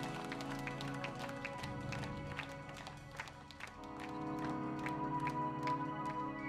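Live instrumental rock from a trio of electric guitar, bass and drums: the drummer keeps a steady, quick run of stick strikes over held guitar and bass notes. A fuller, louder chord comes in about two-thirds of the way through.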